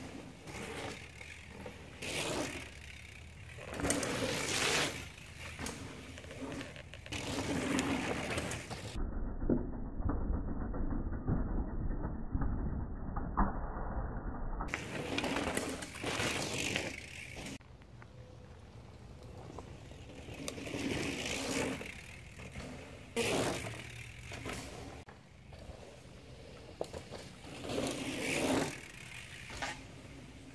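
Mountain bikes passing over dirt jumps and berms: knobby tyres rolling on packed dirt with the freehub ratchet clicking, in a series of short swells as riders come by. Several seconds of dull low rumble, with the higher sounds gone, sit about a third of the way in.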